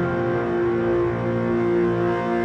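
Background music with sustained, layered tones that shift to new notes near the start.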